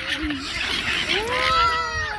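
A flock of silver gulls squawking together; about a second in, a frightened toddler starts a long rising wail.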